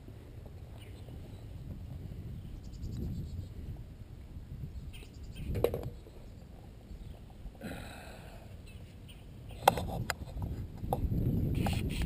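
Wind rumble and handling noise on a handheld camera's microphone, with a few short sharp clicks, the sharpest near the end.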